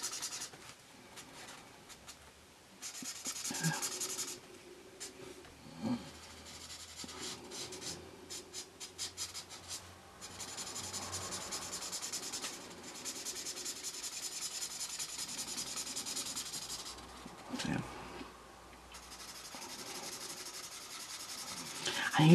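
Felt nib of a Promarker alcohol marker rubbing and scratching across paper in runs of quick colouring strokes, with short pauses between them.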